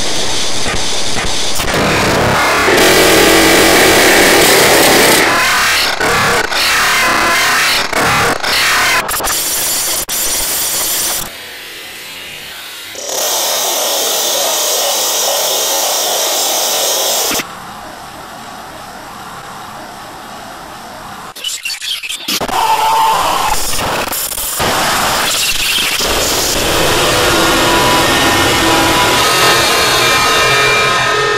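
Loud, harshly distorted music and noise that cut abruptly from one section to the next. The sound drops to a quieter level for about two seconds starting around eleven seconds in, and again for about four seconds starting around seventeen seconds in.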